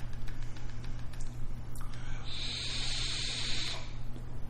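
Sub-ohm vape tank (Morpheus V2) being fired at 79 watts and drawn on: a hiss of air and vapour through the coil starts about two seconds in and lasts about a second and a half, over a steady low hum.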